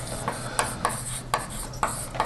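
Chalk writing on a blackboard: short, irregular scratching strokes, a few a second.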